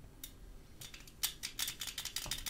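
Light, irregular clicking: a few scattered clicks, then a quicker run from about a second in.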